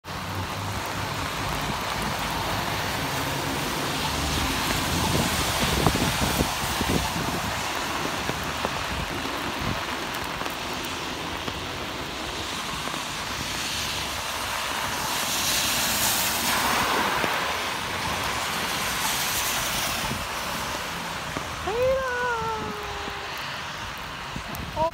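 Steady heavy rain with the hiss of traffic on a wet road. The hiss swells twice in the middle as vehicles pass, and a short pitched call bends up and then slowly falls near the end.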